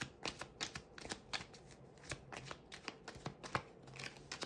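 A deck of oracle cards being shuffled by hand: a quick, irregular run of soft card clicks and slaps, several a second.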